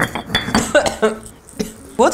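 Stone pestle pounding and grinding mixed peppercorns in a white stone mortar: a run of sharp knocks and gritty scrapes that thins out and grows quieter in the second half.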